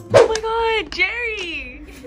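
A girl's long, high-pitched squeal with a sharp start, held for over a second and sliding down in pitch, without words.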